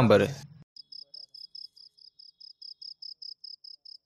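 A cricket chirping in an even rhythm, about five short, high chirps a second.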